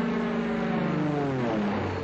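Sustained droning chord of several steady tones from the end of a TV commercial's soundtrack. The tones slide down in pitch together in the second half and fade out.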